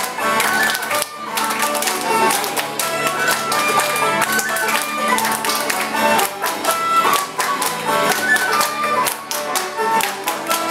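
Romanian folk tune with an acoustic guitar and a melody line, over a steady beat of many hands clapping together.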